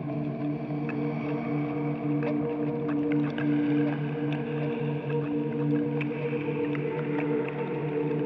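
Dark ambient drone from a black metal album: low sustained tones holding steady, with faint scattered crackles above them.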